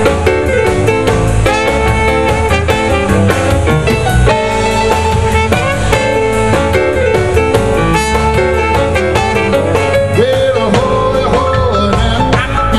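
Live blues band playing an instrumental passage: electric guitar over bass and a drum kit keeping a steady beat, with keyboards and horns in the band.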